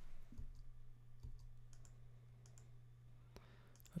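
A few faint, separate clicks of a computer mouse as on-screen value fields are selected, over a low steady hum.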